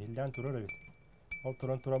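A man's voice speaking in conversation, pausing in the middle, with a faint steady high-pitched tone running under it from about a third of a second in.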